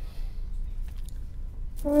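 Quiet room tone with a low steady hum and a few faint clicks and rustles. Near the end a loud held pitched tone begins, music or a voice.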